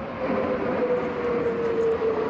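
Jet engines of a formation of military jet trainer aircraft passing overhead: a loud, steady rush with a whine that slowly falls in pitch as they go by.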